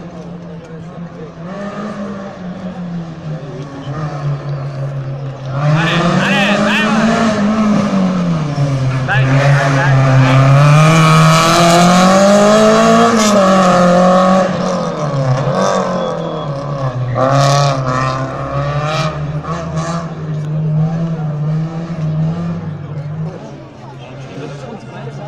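Rally car engine approaching and passing at speed, its pitch rising and falling as it is revved through the gears. It grows loud about six seconds in, is loudest for a few seconds around the pass, then fades.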